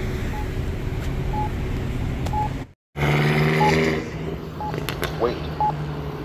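Campbell Guardian accessible pedestrian signal locator tone: a short beep about once a second over passing street traffic. The sound drops out completely for a moment just under halfway through.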